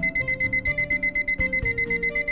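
Handheld digital timer going off: rapid, high-pitched electronic beeping, about eight beeps a second, signalling that the 20-minute wait for the allergy skin-test reading is up.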